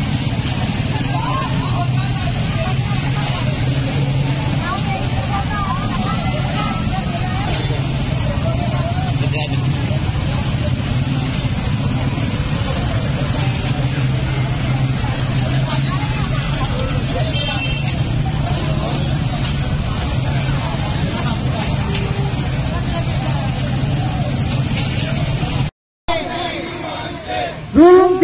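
A steady drone of many motorcycle engines running together at low speed, mixed with the voices of a crowd shouting and talking over them. The sound cuts off abruptly just before the end.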